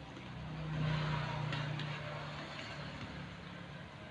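A passing motor vehicle: a low engine hum that swells about a second in and slowly fades away.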